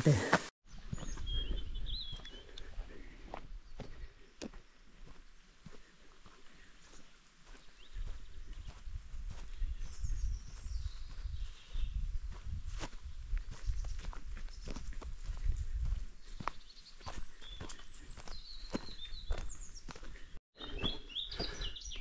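Footsteps on a gravel dirt track, with birds chirping now and then. The sound cuts out briefly twice.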